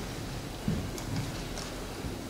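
Pause in a talk: faint room tone of a hall with a low steady hum, a soft thump about two-thirds of a second in and a couple of light ticks.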